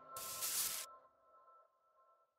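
Electronic logo-sting sound effect: a short hissing whoosh just after the start, over two held high electronic tones that fade away, leaving near silence for the last second or so.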